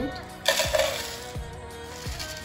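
Dry muesli poured from a small glass bowl into an empty plastic jar: a sudden burst of flakes and pieces hitting the plastic about half a second in, fading over about a second. Background music with a steady beat plays underneath.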